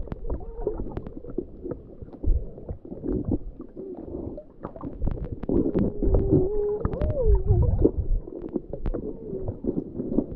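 Sound picked up by a camera submerged underwater: muffled low rumbling and sloshing with scattered sharp clicks, and wavering muffled tones around the middle.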